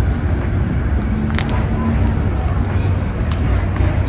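Loud, steady low rumble of outdoor background noise, with faint voices in it.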